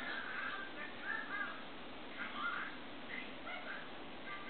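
Faint bird calls: a few short calls, roughly one a second, over quiet room hiss.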